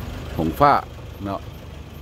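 A few spoken words from the narrator over a steady low background rumble.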